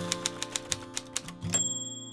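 Typewriter sound effect: a quick run of key clacks, about seven a second, then the typewriter's bell dings about a second and a half in, over soft guitar music.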